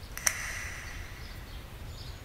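Quiet outdoor background with a faint bird chirp early on.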